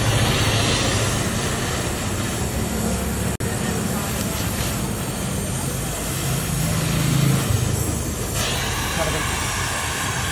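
Gas welding torch burning with a steady hissing roar while a filler rod is fed in, welding spring hooks onto a motorcycle exhaust silencer. The sound breaks off for an instant a little over three seconds in.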